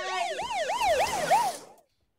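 A siren-like wail sweeping rapidly up and down, about four sweeps a second, over a hiss. It cuts off suddenly near the end.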